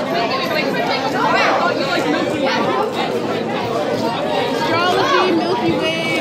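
Several people chattering and talking over one another in a busy cafeteria.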